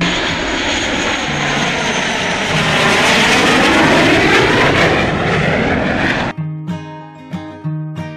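Blue Angels F/A-18 Hornet jet passing low overhead with its twin turbofan engines running: a loud, rushing jet noise that swells to its peak in the middle with a swirling, phasing sweep, then cuts off abruptly about six seconds in. Acoustic guitar music plays faintly underneath and takes over after the cut.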